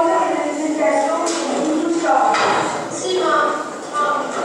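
Speech in an echoing room, with no clear non-speech sound standing out.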